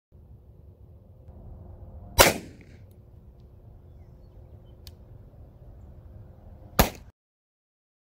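Two sharp 9mm pistol shots from an HK VP9, about four and a half seconds apart, over outdoor background noise.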